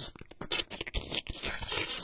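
Licking and slurping sound effect: a rapid, irregular run of wet clicks and smacks.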